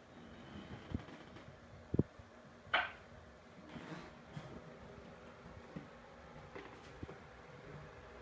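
Quiet room sound with a few soft thumps of footsteps on a hardwood hallway floor, about a second apart early on, and one brief higher-pitched sound a little under three seconds in.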